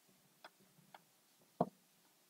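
Whiteboard marker tapping against the board in a few faint, irregular clicks, with a louder knock about a second and a half in.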